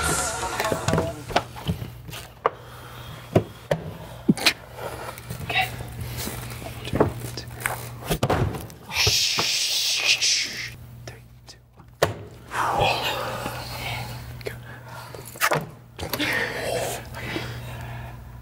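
Quiet background music under people stifling laughter and whispering, with scattered taps and knocks of hands and cards on a tabletop.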